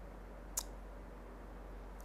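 A single short, sharp click about half a second in, over quiet room tone.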